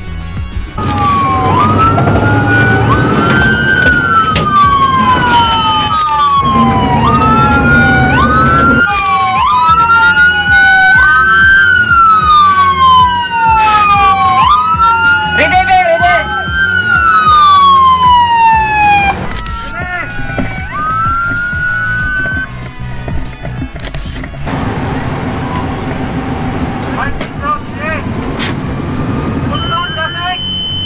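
Fire truck siren wailing, each cycle rising quickly and falling away over about two seconds, over the truck's engine running. The siren stops about 22 seconds in, leaving the engine, and a steady high beep comes in near the end.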